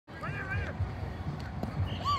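A high-pitched voice shouting briefly near the start, over low, uneven wind rumble on the microphone.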